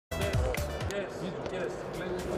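Basketball arena sound: basketballs bouncing on the court with echo in the hall, several short hits in the first second, over voices and music.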